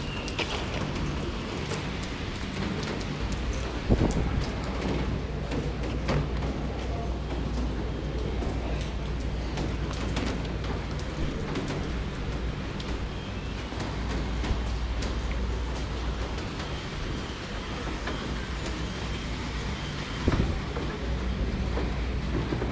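Wet street ambience in the rain: a steady wash of rain and wet-road noise over a low, steady rumble, with a few short knocks, the loudest about four seconds in and again near the end.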